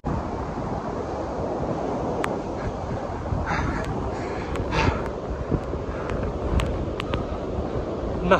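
Wind blowing across the microphone over the steady wash of surf breaking on the beach. A couple of short, heavy exhales from a man straining in press-up position come about three and a half and five seconds in.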